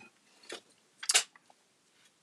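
Short handling clicks: a small one about half a second in and a louder one about a second in, as a paintbrush is picked up and an aluminium glue tray is handled on a craft table.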